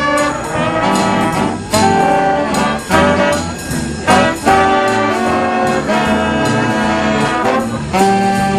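A high school jazz big band playing: trombones, trumpets and saxophones sounding full chords over a drum kit, with several loud accented ensemble hits in the first half.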